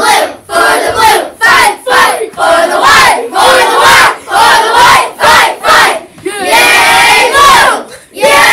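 A group of children chanting a cheer loudly in unison, in short rhythmic bursts about two a second, ending in a longer held shout near the end.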